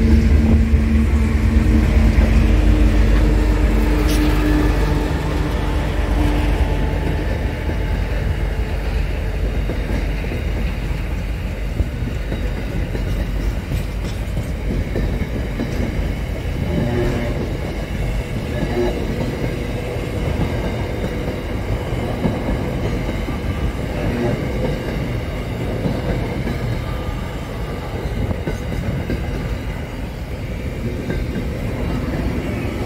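A diesel-hauled freight train passing close by. The locomotive's engine hum is loudest in the first few seconds, then container wagons roll past in a steady rumble of wheels on rails.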